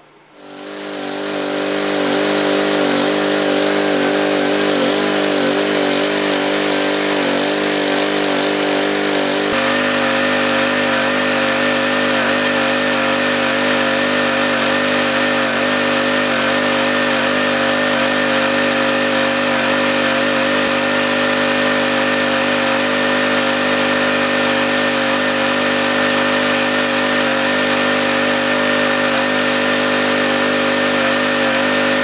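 Small gasoline engine driving the recirculating highbanker's water pump, running steadily with its freshly rebuilt carburetor, along with the rush of water through the plastic cyclone. The sound fades in over the first two seconds, and the engine's pitch steps up slightly about nine seconds in.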